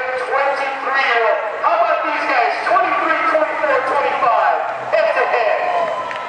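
Spectators close by shouting and cheering, several raised voices overlapping with no clear words.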